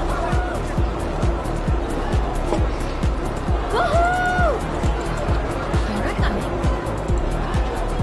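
Punjabi pop song playing, with a steady, fast bass beat and a held note that rises, holds and falls about halfway through.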